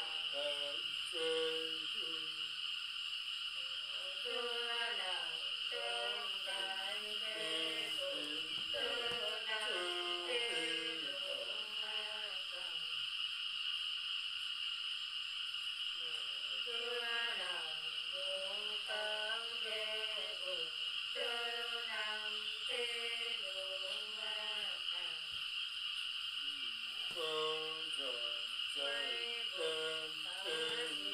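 A woman singing a Nùng folk song unaccompanied, in long wavering, drawn-out phrases with short pauses between verses. A steady high insect chirr runs underneath.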